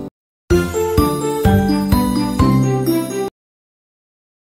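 The intro music stops right at the start, and after a half-second gap a short musical jingle plays: a run of several notes lasting about three seconds, which cuts off suddenly into silence.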